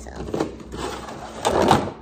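A Funko Pop box being opened and the figure in its packaging slid out: cardboard and plastic rustling and scraping, with a few clicks and the loudest scrape near the end.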